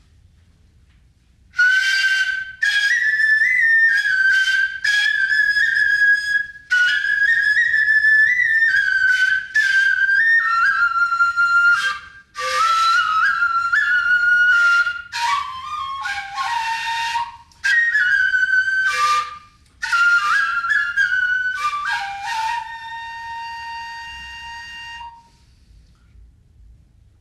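Solo nohkan, the Japanese noh transverse bamboo flute, played in high, breathy phrases that step and slide between notes, broken by short breaths. It starts a couple of seconds in and ends on a long, lower held note that fades away near the end.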